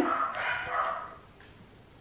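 Domestic dogs barking briefly in the first second.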